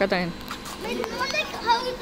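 Children's voices: a child talking and calling out in high-pitched bursts while playing.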